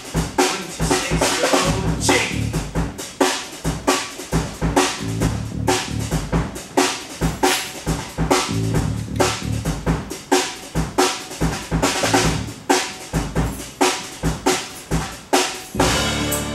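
Band music driven by a drum kit: a steady beat of bass drum and snare, about two strikes a second, over a bass line, as the musical's instrumental accompaniment.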